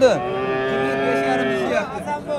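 Cattle mooing: one long, steady moo lasting about a second and a half that tails off near the end.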